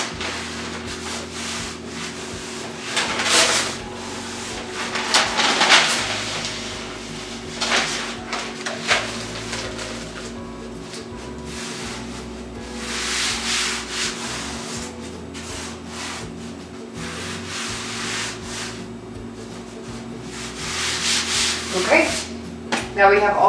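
Hands rubbing and smoothing self-adhesive contact paper onto a painted wooden panel, the paper rustling and swishing in irregular strokes as it is pressed down and lifted to work out air pockets.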